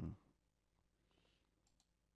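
Near silence with a few faint, isolated clicks, typical of a computer mouse button.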